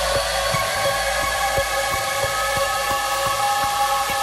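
Experimental electronic music: a dense hiss with several steady held tones above it and irregular sharp clicks, over a faint deep bass.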